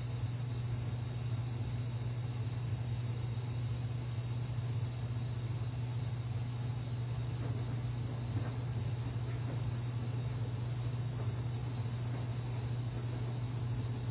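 Steady low background hum, even and unchanging.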